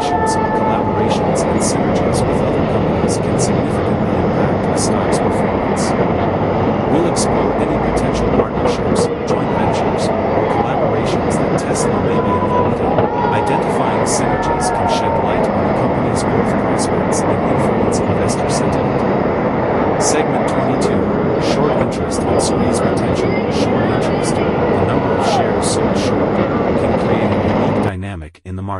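Busy city street ambience: steady traffic noise with indistinct crowd chatter and frequent short clicks, cutting off abruptly at the end.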